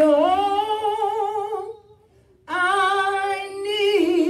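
A woman singing unaccompanied, holding two long notes with a slow vibrato. The first note steps up in pitch shortly after the start, and there is a brief pause about halfway through before the second note.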